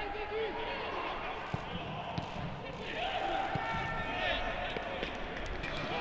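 Footballers shouting to one another on the pitch, with a few sharp thuds of a boot striking the football. There is no crowd noise, so the calls and kicks carry clearly around the empty stadium.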